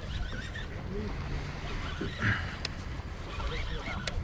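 Steady low rumble of wind and water around a small anchored boat, with faint distant voices and one short click about two-thirds of the way through.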